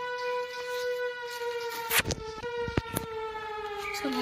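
A long, steady siren-like wail, one held pitch that sags slightly lower as it goes on. Two sharp clicks or knocks sound about two seconds in and again a little under a second later.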